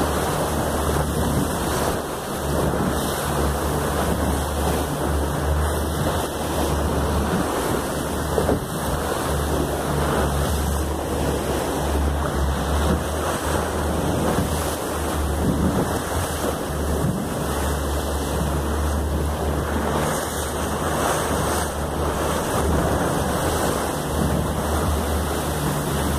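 Wind rumbling on the microphone over a steady rush of sea water.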